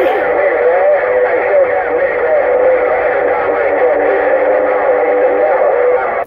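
Received audio from a Uniden Grant XL radio's speaker on 27.025 MHz: a steady, narrow-band stream of garbled, overlapping voices and wavering whistles from distant stations, with no clear words.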